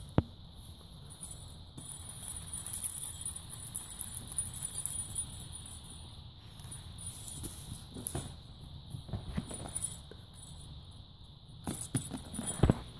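Kittens playing close to the microphone: light scuffling and a few soft taps, with a high rustling hiss for a few seconds early on.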